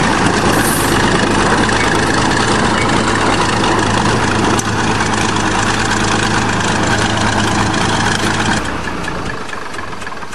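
Bulldozer's diesel engine running steadily and loudly. About eight and a half seconds in its note drops lower and the sound eases off slightly.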